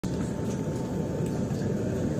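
Steady low rumble of a classroom's air-conditioning, with a faint steady whine above it.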